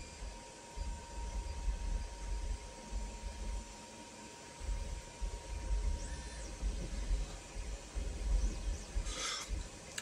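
Quiet room tone with soft, irregular low rumbles and faint rubbing from fingers turning a small resin miniature figure, over a faint steady hum.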